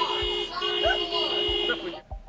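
Car horns honking in celebration: a steady two-note horn held in two long blasts with a short break between them, and people's voices calling out over it.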